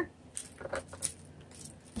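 A few light clicks and rattles of small hard objects being handled, spaced out and quiet.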